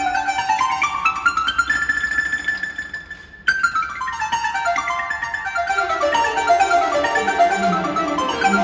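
Wooden marimba played four-handed by two players in a fast solo passage: a rapid run climbing in pitch, a high note held, a brief break about three and a half seconds in, then a long run descending to the low notes.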